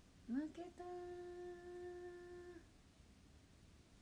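A young woman's voice exclaiming "maketa" ("I lost"), the last vowel drawn out into one long, steady, hummed-sounding note of about two seconds.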